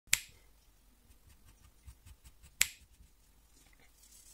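Two sharp clicks about two and a half seconds apart, with faint light ticks between them.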